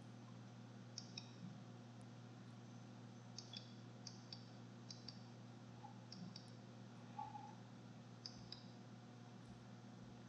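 Faint computer mouse clicks, mostly in quick pairs of press and release, several times over a low steady electrical hum.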